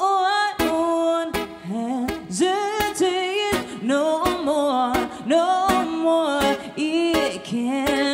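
A woman singing a pop melody over an acoustic guitar strung with Dogal RC148 phosphor bronze strings, which is strummed in a steady beat of about one stroke every three-quarters of a second.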